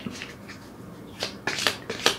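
Cards being handled on a table: a quiet start, then a few sharp clicks and taps from about a second in.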